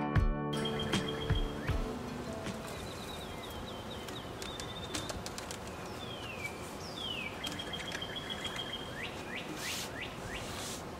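Wild songbirds chirping and calling, with repeated short chirps, a held high whistled note and several falling whistled notes. Acoustic guitar music fades out in the first two seconds.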